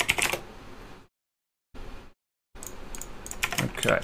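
Typing on a computer keyboard in short bursts of keystrokes, cutting off suddenly to dead silence between bursts.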